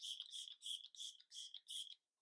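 Milk Makeup Hydro Grip setting spray pumped about six times in quick succession, each pump a short, faint hiss of fine mist.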